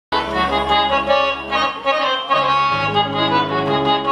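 Harmonium playing a melody of held reed notes, starting abruptly as the recording begins, with the low notes shifting about two and a half seconds in.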